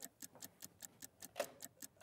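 Faint, fast, clock-like ticking, several ticks a second: the tick of a running countdown timer.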